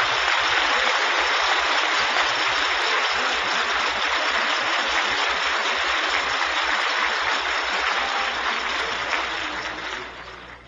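Large audience applauding steadily, dying down near the end.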